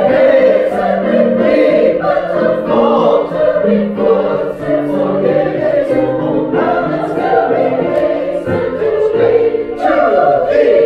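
Sopranos and altos singing together as a choir, with several voice parts holding and moving between sustained notes.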